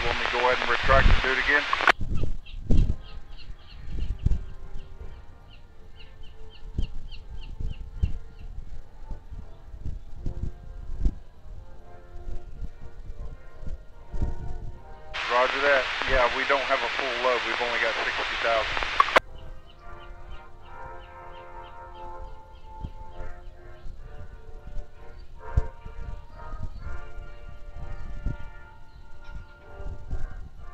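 Two bursts of marine VHF radio transmission, too garbled to make out, that start and stop abruptly: a short one at the very start and one of about four seconds midway. Soft background music plays between them.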